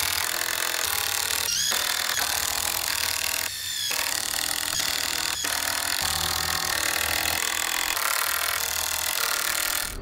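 Cordless drill driving 3-inch screws into pressure-treated 2x4s, running almost without a break. There are short pauses about one and a half and three and a half seconds in, and a rising whine as the drill spins up again.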